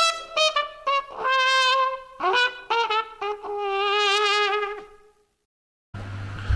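A short trumpet tune of several quick notes, ending on a long note with vibrato that stops about five seconds in.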